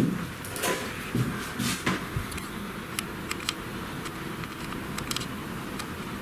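Quiet room background with a low steady hum, broken by a scattering of short faint clicks and small handling noises.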